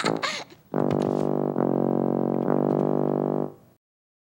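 A tuba plays a low note three times at the same pitch, each held about a second, then stops shortly before the end; in the game these low notes are the cue to crouch down. A child's voice trails off just at the start.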